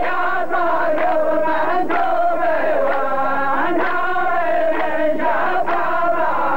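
A row of men chanting a qalta poetry verse back in unison, a drawn-out group chant, with a sharp beat about every two seconds.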